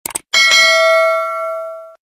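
Subscribe-button animation sound effect: a quick double mouse click, then a bell ding with several ringing tones that starts about a third of a second in, fades and cuts off just before the end.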